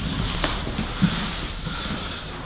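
Rustling and shuffling of two people shifting their bodies and clothing on a floor mat and cushion, with a light knock about half a second in and a soft thump about a second in.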